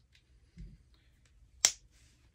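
One sharp plastic click of a handheld action figure's head joint snapping back as it is pushed, about one and a half seconds in, after a faint soft bump of handling.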